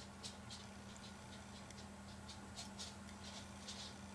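Faint trickling and splashing of brown ale poured slowly from a bottle into a pint glass, in short, irregular spurts.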